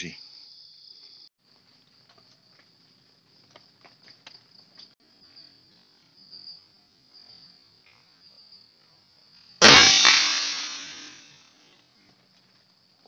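A single sharp air rifle shot firing a pellet, about ten seconds in, by far the loudest sound, followed by a noisy tail that fades over about two seconds. Before it, a steady high insect chirr that drops off after about a second and carries on faintly.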